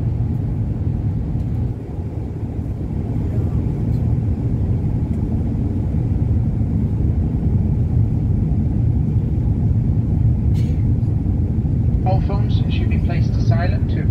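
Steady low rumble of a jet airliner's cabin in flight, engine and airflow noise, dipping briefly about two seconds in and then slowly building again.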